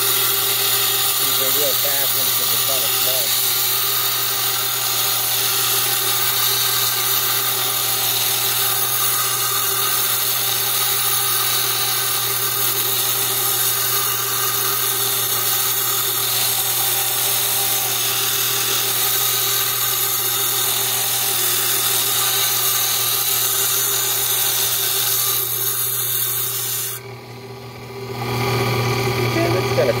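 Small wet diamond-blade saw cutting through an agate: a steady grinding hiss over a constant motor hum. Near the end the cutting noise drops away as the cut finishes, and the motor runs on.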